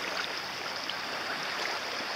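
Small waves washing on the shore at the water's edge, an even hiss of moving water.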